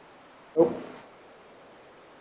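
A pause in a lecture: steady faint room hiss, broken about half a second in by one short spoken "oh".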